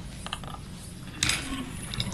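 Light handling sounds at a desk: a few small clicks, then a short rustle a little past the middle, like papers being moved near a microphone.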